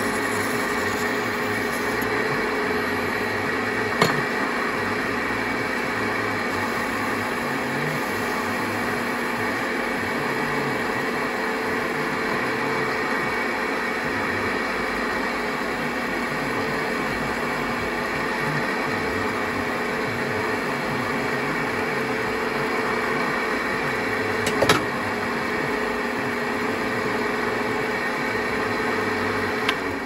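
Metal lathe running steadily, its motor and chuck giving an even hum, while a file and then abrasive cloth are held against the small spinning part to smooth it. Two short sharp clicks come about four seconds in and again near twenty-five seconds.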